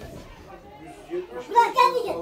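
Speech only: men's voices talking, with a loud raised voice about one and a half seconds in.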